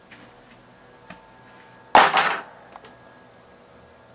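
A single loud, sharp thud about halfway through that dies away within half a second, with a few faint clicks before it.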